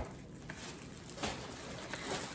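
Faint handling sounds as candles are lifted out of a cardboard shipping box: soft rustling of packing with a couple of light knocks.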